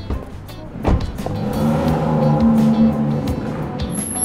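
A car pulling away: a thump about a second in, then the engine sound swells and eases, with the drama's background music underneath.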